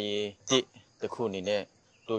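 A man speaking in short phrases with brief pauses between them.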